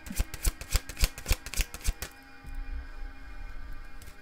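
Hands handling paper tarot cards: a quick, irregular run of light clicks and taps, several a second, for about two seconds, then quieter handling, with soft background music underneath.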